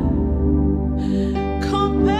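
Instrumental backing of a gospel worship song holding steady sustained chords in the gap between sung phrases, with a short hiss near the middle.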